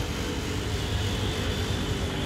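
Steady outdoor city background noise: a constant low rumble with a steady high hiss over it.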